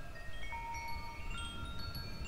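Chimes ringing, with overlapping tones at many different pitches, each struck at its own moment and ringing on. A low rumble sits underneath.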